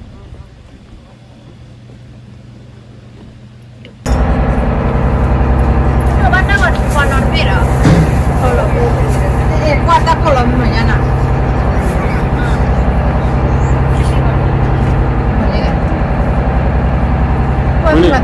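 Tour boat's engine running loudly and steadily from about four seconds in, with people talking over it.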